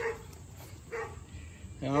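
A dog barking twice, short barks about a second apart.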